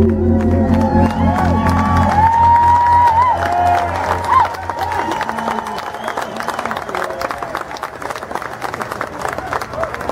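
A live band's final chord rings on and stops about two seconds in, under a crowd cheering. The cheering gives way to steady applause, with hands clapping through the second half.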